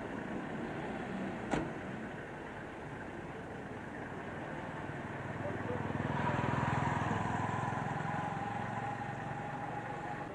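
A motor vehicle passing by on the road, its engine growing louder in the second half and then fading, with a whine that sinks slightly in pitch as it goes. A single sharp click about one and a half seconds in.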